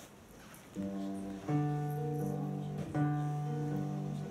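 Acoustic guitar beginning to play: after a quiet first second, ringing chords sound, with a new chord struck about every second and a half.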